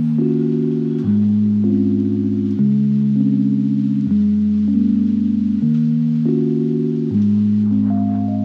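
Background music: slow sustained low chords, each struck and held, changing about every second and a half.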